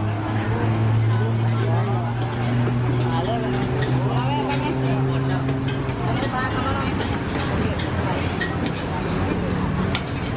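Voices chattering over a steady low hum.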